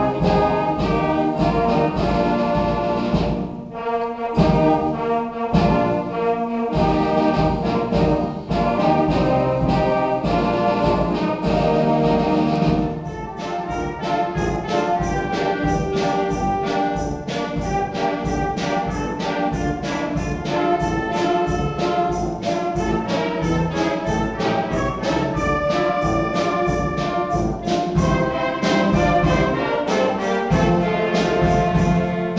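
Student wind band of brass, flutes, saxophones and drum kit playing live. About thirteen seconds in, the full, loud passage gives way to a lighter section with a steady, detached beat.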